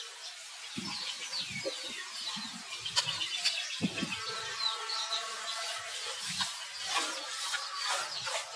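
Baby macaque squealing and crying in short, high-pitched bursts, with a longer wavering cry about five seconds in, while its mother handles it. Soft low thumps from the struggling are mixed in.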